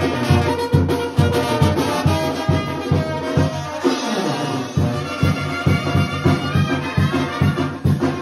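Live Mexican banda playing dance music: trumpets and trombones carry the tune over a steady bass-drum and sousaphone beat. The bass and drum drop out briefly about halfway through, then the beat comes back.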